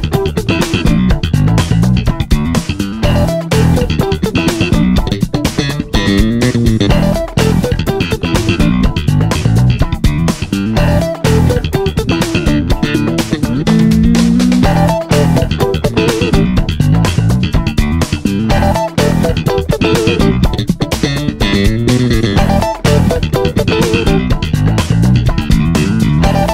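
Four-string electric bass played slap-style: a busy funk line of thumb-slapped and popped notes with sharp percussive attacks.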